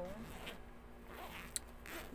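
Zipper on a fabric backpack being worked, with a single sharp click near the end.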